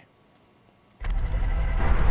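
About a second of near silence, then a steady low outdoor rumble cuts in suddenly. It sounds like road traffic.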